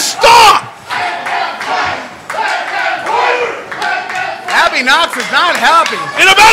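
Small wrestling crowd shouting and yelling, several voices overlapping, with a loud shout right at the start and a run of rising-and-falling yells in the second half.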